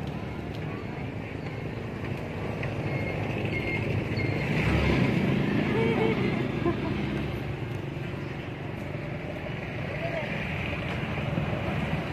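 A motor vehicle's engine running steadily, louder for a few seconds near the middle as it draws closer, with faint voices in the background.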